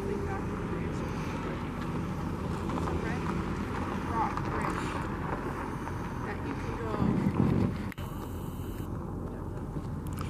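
Indistinct voices of people talking at a distance over a steady outdoor background rumble; the background drops suddenly about eight seconds in.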